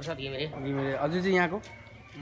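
A man talking in short phrases, breaking off near the end.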